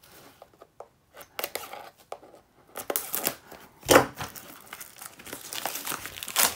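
Clear plastic shrink-wrap being torn off a cardboard miniatures box and crinkling in the hands, in irregular bursts, the loudest about four seconds in.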